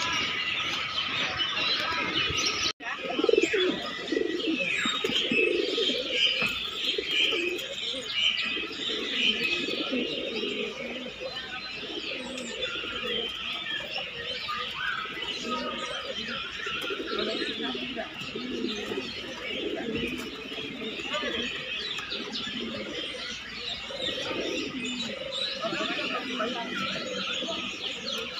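Domestic pigeons cooing over and over in low, repeated bursts, with the high chirping of small birds running underneath. The sound drops out for an instant about three seconds in.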